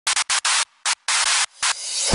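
Choppy bursts of static-like hiss, a glitch effect that cuts in and out about seven times, then a swell of noise rising near the end as a lead-in to the beat.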